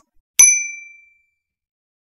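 Notification-bell sound effect: a single high-pitched ding about half a second in, fading out over about a second.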